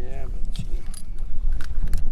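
Light metallic clinks and jangling over a steady low rumble, with a few separate sharp clicks.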